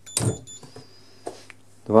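Short high-pitched electronic beep from the RusGuard R-10 EHT proximity reader's buzzer as a key fob is presented: the key is accepted and the lock is released for its 5-second opening time. Faint ticks follow about a second later over a steady low hum.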